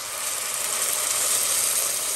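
Boiling water poured in a steady stream from a kettle into a pot of frying onions and tomato paste, splashing into the hot sauce with a steady hiss.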